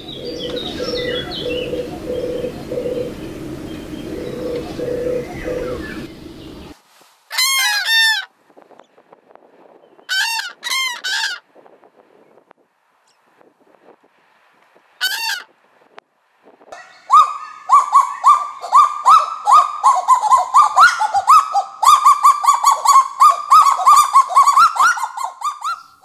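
European turtle doves purring, a slow repeated low 'turr' about once a second. Then common cranes give loud trumpeting calls in three short bursts with pauses between. Then comes a long run of rapid, repeated bird calls, about three a second, rising slightly in pitch.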